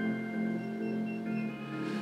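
Ambient music of sustained, layered tones over a slow low pulse.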